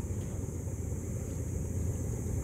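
Steady low outdoor rumble with no distinct event, the kind of mixed background noise of wind and distant traffic or engines.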